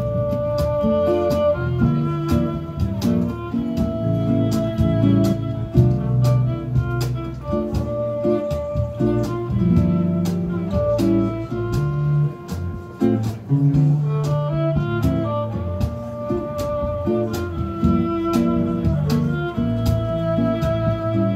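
Live acoustic string trio playing: a violin holds melody notes over plucked acoustic guitar accompaniment and a low bass line.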